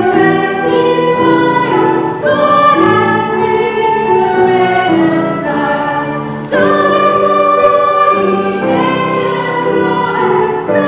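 A small choir singing a Christmas carol in long held phrases, accompanied by grand piano, with a brief drop in level before a new phrase comes in about six and a half seconds in.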